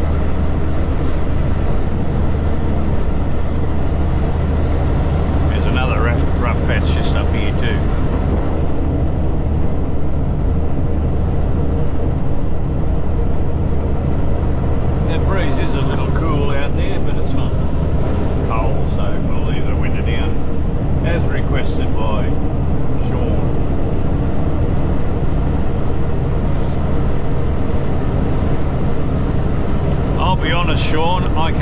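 Heavy truck cab at highway cruise: the diesel engine and tyre and road noise drone steadily, with a strong low hum.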